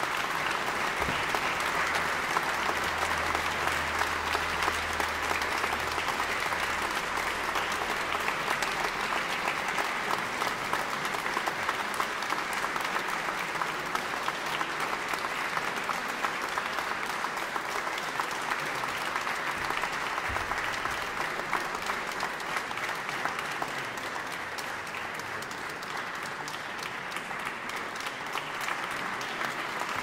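A concert audience applauding steadily, many hands clapping at once.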